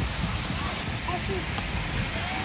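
Steady hiss of spraying and splashing water from a splash-pool play structure, with faint voices of other bathers in the background.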